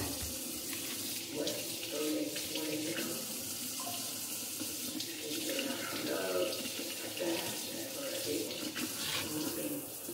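Kitchen faucet running steadily, its stream splashing into a metal frying pan held under it over the sink as the pan is rinsed.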